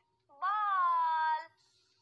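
A single high-pitched, drawn-out vocal call about a second long, rising briefly and then sliding down in pitch.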